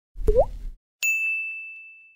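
Two graphic-animation sound effects. First a short pop with a quick rising bloop. Then, about a second in, a single bright bell-like ding that rings on one high note and fades away.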